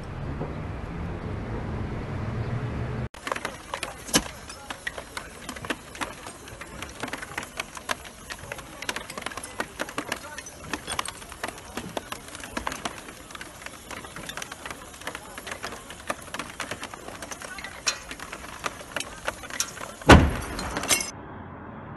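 A burning building crackling and popping at close range, with many sharp pops at irregular intervals. Before that, for the first three seconds, there is a low steady rumble.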